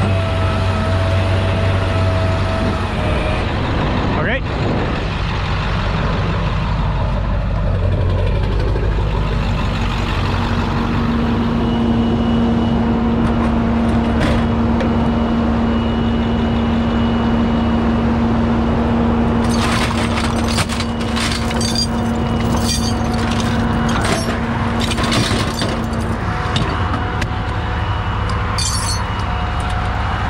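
Rollback tow truck's engine running steadily while the hydraulic tilt bed carrying a pickup is worked, with a steady hum from about ten seconds in until a few seconds before the end. In the last third come a run of sharp metallic clanks and rattles.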